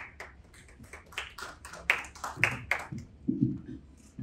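Brief scattered applause from a small audience: irregular separate hand claps over about three seconds, thinning out and stopping.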